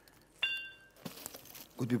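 A glass bottle struck once: a single bright clink about half a second in, whose high, clear ring fades over about half a second, the sound of real glass.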